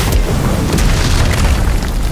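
Sound effect of a green fire blast in an animated fight: a loud, deep, continuous rumbling boom with a rushing noise over it, under background music.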